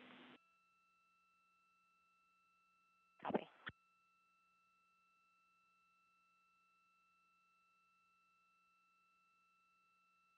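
Near silence on the mission control audio feed, with faint steady electronic tones and one brief burst of radio sound about three seconds in.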